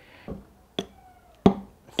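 Two sharp clicks, the second louder, from the switchable magnet being handled against a stack of metal bars.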